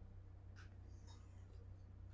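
Near silence: room tone with a steady faint low hum and a couple of faint, brief soft sounds.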